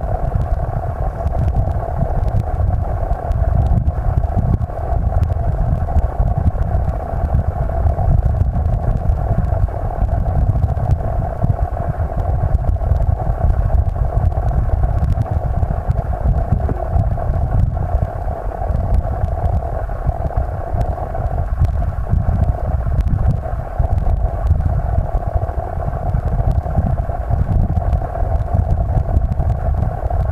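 Steady, muffled low rumble of stream water flowing over a gravel bed, heard through a camera submerged in an underwater housing.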